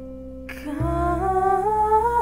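A solo female voice singing a wordless hummed 'ooh' line over a soft instrumental backing track, the pitch climbing in steps. The voice comes in about two-thirds of a second in, together with the low part of the backing.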